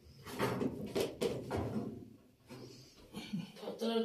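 Low talk with a couple of sharp knocks about a second in, as a heavy metal wood stove is shifted and shimmed level on its feet.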